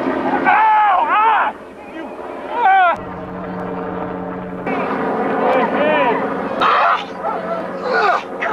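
People yelling and crying out in high, wavering voices, with no clear words.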